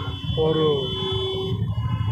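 A man's voice drawing out one long word, held on a steady pitch for about a second, over a steady low background rumble.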